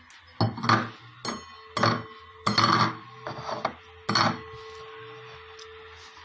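A stainless steel bowl clattering on an electric stove top: a run of knocks and scrapes over the first four seconds or so, with the last one leaving the metal ringing in a steady tone that slowly fades.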